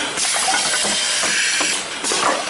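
A rotary capsule filling and sealing machine's pneumatics letting out a loud burst of compressed-air hiss lasting nearly two seconds, starting and cutting off sharply, with faint mechanical clicks beneath it.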